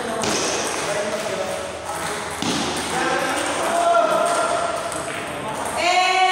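Table tennis ball clicking off the bats and table in a rally, under people's voices talking in the hall, with a louder voice near the end.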